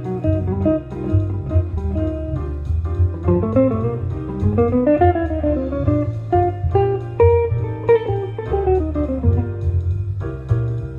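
Archtop hollow-body electric guitar playing fast single-note jazz lines in runs that climb and fall, over a low bass accompaniment.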